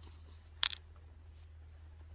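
A single short crunch of a footstep on loose gravel and stones, about half a second in, over a faint low steady rumble.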